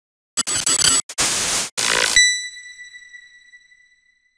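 Intro logo sound effect: choppy bursts of static-like noise for about two seconds, cut off by a single high ringing tone that fades away.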